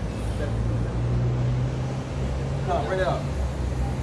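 Street traffic: a vehicle engine hums steadily and rises a little in pitch about a second in, as it drives through. A brief voice is heard near three seconds.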